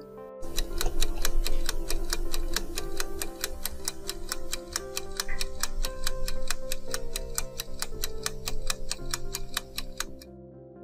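A clock-ticking timer sound effect, with quick, even ticks about four a second, over soft background music. The ticking marks a countdown pause and stops near the end.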